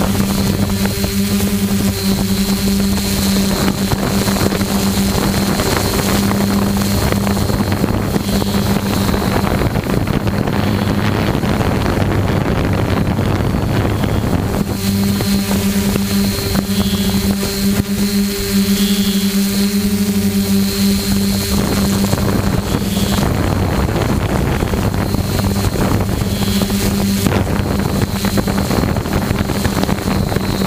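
Multirotor drone's motors and propellers humming steadily, heard from the drone itself, with wind noise on the microphone.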